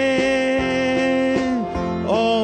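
Gospel-style song with strummed guitar accompaniment; a singer holds one long note that ends about one and a half seconds in, and a new phrase begins near the end.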